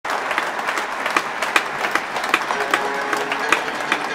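Audience applause, with sharp claps in a steady beat of about two and a half a second, as in clapping along. Faint sustained instrument tones come in during the second half.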